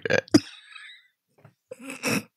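A short throaty vocal sound from a person, followed by breathy hissing noise, then faint voice sounds near the end.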